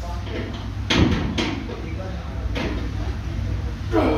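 Two short knocks about a second in, and a breath a little later, from a lifter working through a loaded barbell back squat set, over a steady low hum.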